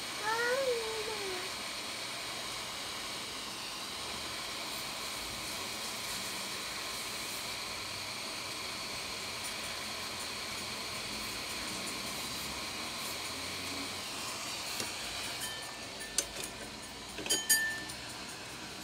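A cat meows once at the start, a short call falling in pitch. It is followed by a steady low hiss, with a few sharp clicks near the end.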